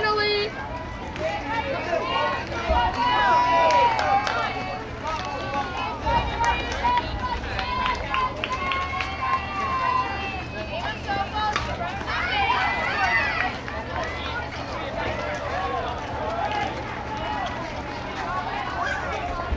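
Several high-pitched girls' voices shouting and calling out at once from the field and sidelines, overlapping with no clear words, with a steady low hum underneath.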